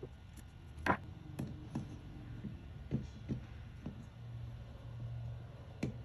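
Small metal screws and a screwdriver clicking and tapping against a carburetor rack during reassembly: a few separate sharp clicks, the loudest about a second in.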